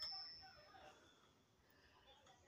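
Faint ringing of a wind chime's metal tubes: a thin, high, steady tone with a few lower tones, dying away within the first second, then near silence.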